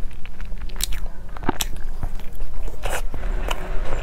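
Close-miked chewing of a mouthful of soft food, with irregular wet mouth clicks and small crackles.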